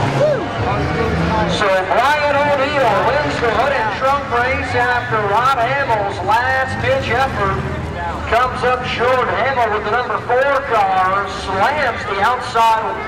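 A man's voice talking continuously, the words not made out, over a low steady rumble of engines that fades after about eight seconds.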